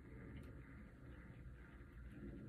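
Near silence: faint low room hum, with one faint click about half a second in.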